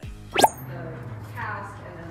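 A quick rising pop sound effect, sweeping sharply up in pitch about half a second in, the loudest thing here. After it come a low steady hum and a brief voice.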